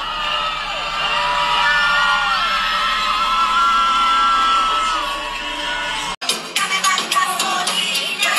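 Loud dance music from a DJ set played over a club sound system, with the crowd whooping and cheering. About six seconds in it cuts abruptly to a choppier stretch of club music.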